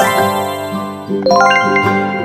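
Cartoon chime sound effect: a bright tinkling shimmer at the start, then a quick cascade of ringing bell-like notes about a second and a quarter in, over a children's background tune.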